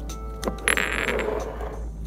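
Small glass reagent bottles clinking and scraping against the bench as a gloved hand handles them: a couple of sharp clicks, then a brief rattling scrape about a second in, over soft background music.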